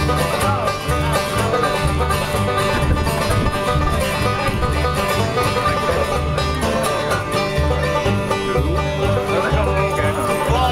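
Bluegrass band playing an instrumental passage: banjo picking over acoustic guitar strumming, with a steady beat of upright bass notes underneath.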